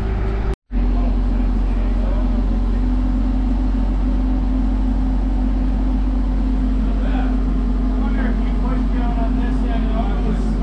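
Diesel engine of construction equipment running steadily at constant speed while the crew moves dirt, briefly cut off about half a second in.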